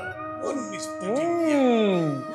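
A drawn-out howl that glides up and then down in pitch, twice, over steady background music.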